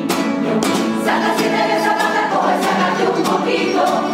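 A Cádiz carnival coro singing together, accompanied by strummed Spanish guitars and bandurrias, the chords struck in a steady rhythm.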